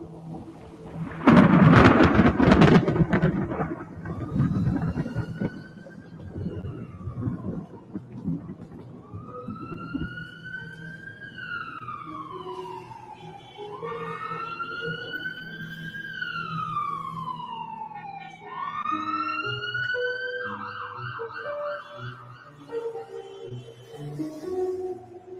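Spooky comic-book teaser-trailer soundtrack. A loud crash comes about a second in, then a high tone slowly rises and falls several times over low, sustained musical notes.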